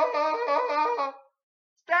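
A man's voice imitating a phone's vibration: a loud, held, buzzing tone with a fast pulsing flutter that stops about a second in. A shouted word follows near the end.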